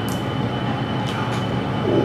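A steady mechanical drone with a thin high whine running through it, and a few faint clicks.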